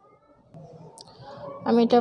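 Faint handling noise at a plastic kitchen cutting board with one sharp click about a second in, as utensils are handled during vegetable prep. A woman starts speaking near the end.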